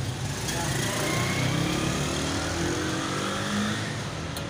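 A passing motor vehicle's engine accelerating, its pitch rising steadily over about three seconds, over street traffic rumble.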